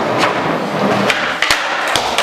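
Skateboard wheels rolling on a concrete floor and a wooden ledge, with three sharp clacks of the board striking.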